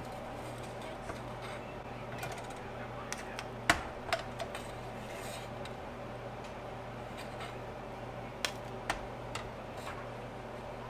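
Metal spoon scraping and tapping inside an electric lead melting pot as slag is skimmed off the molten lead: scattered light clicks and scrapes, with one sharp knock a little before the middle and two more near the end, over a steady low hum.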